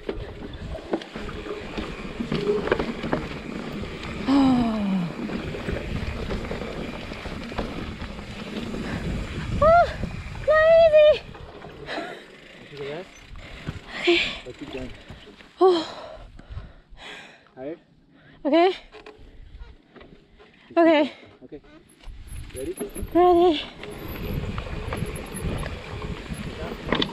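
Mountain bike rolling over a wet dirt trail, with a steady low rumble of tyres and wind on the camera microphone. From about nine seconds in, short wordless vocal exclamations break in again and again, the loudest sounds here.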